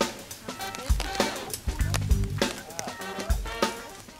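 Funk background music with a drum-kit beat and bass line.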